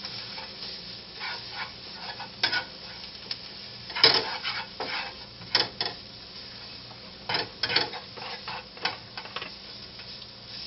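Chopped onion and grated carrot sizzling in a nonstick frying pan, with a spatula scraping and knocking against the pan as they are stirred. The strokes come in irregular clusters, the loudest about four seconds in.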